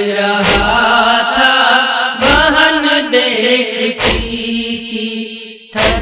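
Chanted nauha, a Muharram lament sung in Urdu, carried on a melodic line. Four deep thuds about 1.8 seconds apart keep a steady beat under it.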